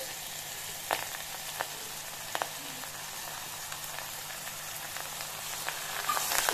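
Chopped onions and curry leaves sizzling in hot oil in an aluminium pressure cooker, a steady hiss with a few sharp crackles.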